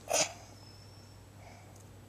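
A single short breathy huff from a person close to the microphone, just after the start, then a quiet background with a steady low hum.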